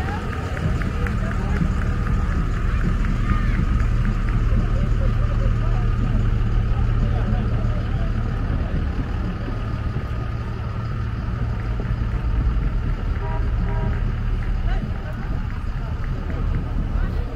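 Low, steady rumble of vehicle engines running, with people's voices faintly in the background.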